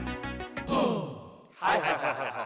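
A looping electronic background music beat stops about half a second in. Two loud, sigh-like gliding sounds follow, the second near the end.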